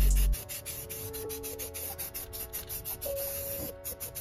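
Loud bass-heavy music cuts off just after the start. Then an aerosol spray-paint can is worked in a quick run of short, evenly repeated strokes, several a second.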